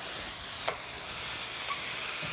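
Onions and freshly added chopped tomatoes sizzling steadily in oil in a stainless-steel skillet, with one light tap about two thirds of a second in.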